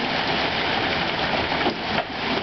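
Quarter-sized hail falling in a thunderstorm, a steady dense clatter and hiss of hailstones striking grass, mulch and pavement, with one sharper knock near the end.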